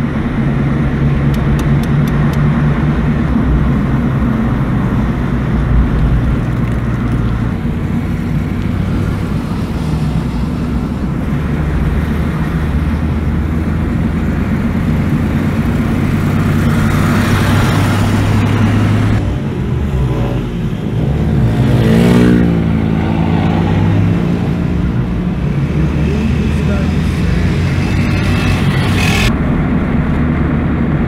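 Car engine and road noise heard from inside the cabin while driving steadily, the engine note shifting a few times. About 22 seconds in, a motorcycle passes close by, its pitch dropping as it goes past.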